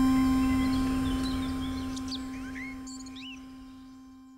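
The last held note of an electronic music track, fading out steadily, with bird-like chirps over it from about a second in until near the end.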